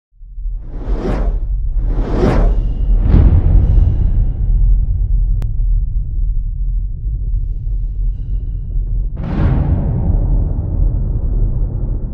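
Cinematic logo-intro sound effects: three quick whooshes in the first few seconds over a deep, sustained rumble, then a bigger whoosh about nine seconds in that slowly fades away.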